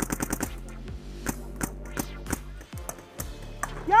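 Paintball markers firing: a rapid string of shots, about ten a second, in the first half second, then scattered single shots.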